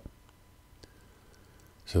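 Quiet room tone with a sharp click at the start and a few faint clicks about a second in; a word of speech begins near the end.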